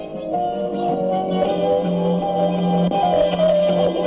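Music from a cassette tape playing through a portable radio-cassette player's speakers. It gets louder over the first second or so as the volume knob is turned up, then plays on at full level.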